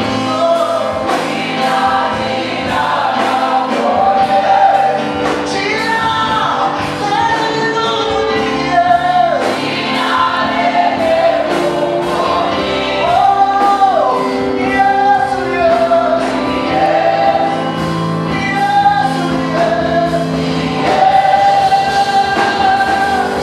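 Live gospel praise song: a worship leader and choir singing through a church PA over band accompaniment with a steady, regular beat.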